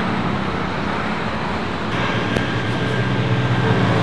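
Steady road traffic, with vehicle engines passing and a low engine hum growing slowly louder over the second half.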